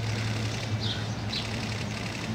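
A steady low machine hum runs throughout, with a few short, high bird chirps over it.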